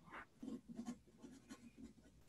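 Faint, irregular scratching of someone writing, in short separate strokes.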